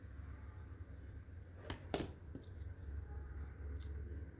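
Faint handling noise from hot-gluing a foam bead onto a paper flower: two brief clicks close together about two seconds in, over a steady low hum.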